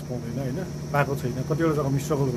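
A man speaking, with a steady high-pitched tone and a low hum running under the voice.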